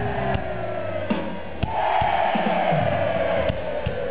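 Rock band playing live through a festival PA, heard from the audience: drum hits and bass under a loud held note that slowly slides downward from about halfway through.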